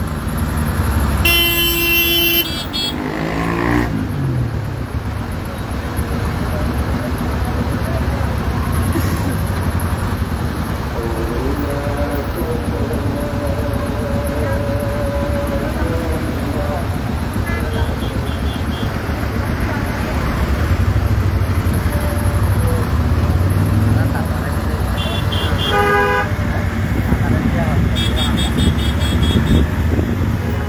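Traffic in a stalled highway jam: engines running under a steady rumble, with vehicle horns honking repeatedly. A long, loud blast comes about a second in, and shorter honks follow later, several of them near the end. Voices are heard in the background.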